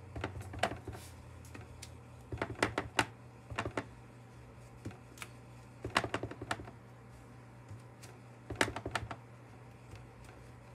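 Clear acrylic stamp block tapped repeatedly onto an ink pad, in several quick clusters of light clicking taps with short pauses between.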